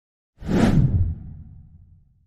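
A whoosh sound effect for an animated logo intro. It swells in suddenly about half a second in, then leaves a deep low tail that fades out over the next second.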